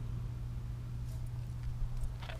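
A steady low hum, with a faint knock or handling noise near the end.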